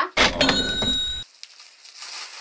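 Cash-register "ka-ching" sound effect: a bright bell ring over a burst of noise, lasting about a second and cutting off sharply.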